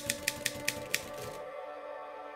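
Typewriter key clicks, a typing sound effect, over a held music chord. The clicks stop about a second in, leaving the chord sounding on its own.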